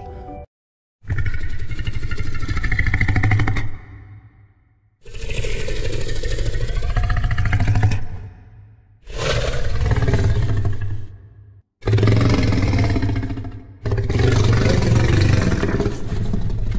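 Sound-designed recreation of Carnotaurus vocalizations: a series of five deep, rumbling calls, each two to three seconds long, separated by short pauses.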